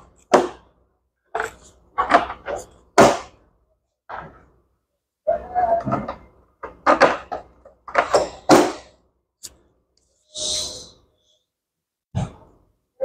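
Hard plastic knocks and clunks as the lid and inner compartment of a Sunhouse evaporative air cooler are handled: a series of short, separate knocks, the loudest about three seconds in, with some low speech between them.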